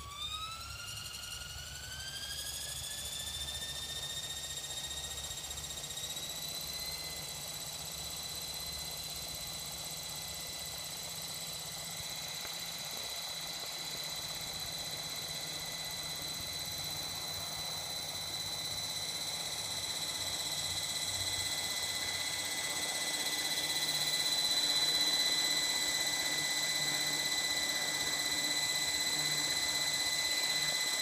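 Blade 500 3D electric RC helicopter spooling up on the ground: a high motor and gear whine rises in pitch over the first five or six seconds, then holds steady as the rotor reaches speed, growing somewhat louder in the second half.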